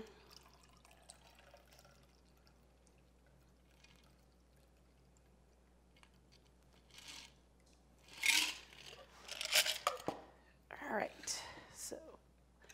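A shaken cocktail being poured from a metal cocktail shaker into a martini glass, the cup held on as a strainer. The pour is a faint trickle at first. From about eight seconds in come several loud, noisy bursts from the shaker as it is tipped up for the last drops.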